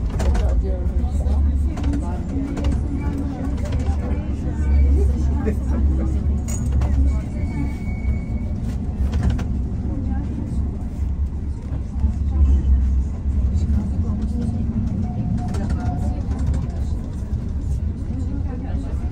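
Low, steady rumble of a street tram in motion, with people's voices in the background.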